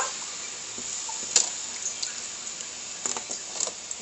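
Steady watery hiss from a pot of tomato-sauce broth with sausage pieces and corn, just topped up with water, with a couple of faint light knocks.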